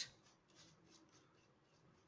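Near silence, with faint soft strokes of a paintbrush spreading varnish over a painted plastic sheet.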